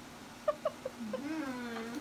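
Wordless voice sounds, with no words: three or four quick high yelps, then a long sing-song hum that rises and falls in pitch.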